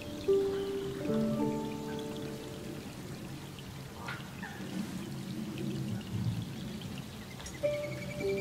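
Slow harp music, its plucked notes ringing for about the first two seconds, thinning out through the middle and returning near the end, over steady rain falling on open water.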